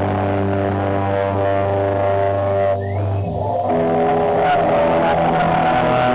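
Live rock band with electric guitars holding a long sustained chord over a deep, droning low note; a little over three seconds in the low note drops out and a new chord rings on.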